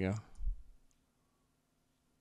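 The end of a spoken word, then a single low thump about half a second in and a faint click, likely from the computer mouse. After about a second, near silence.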